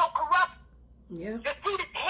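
A woman's voice speaking in short, animated stretches, with a brief pause around the middle and a drawn-out rising vocal sound just after it.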